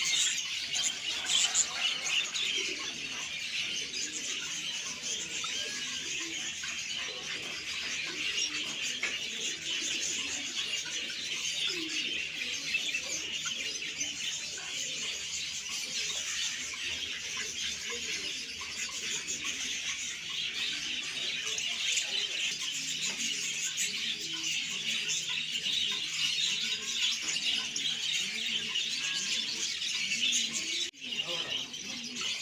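Many caged small birds chirping and twittering at once: a dense, unbroken chorus of short high chirps at a steady level.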